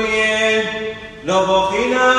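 Voices chanting a Syriac Orthodox Passion Week (Hasho) hymn in long held notes, with a short break for breath about a second in before the chant starts again.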